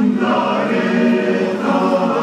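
Choir singing, with long held notes that change pitch every second or so.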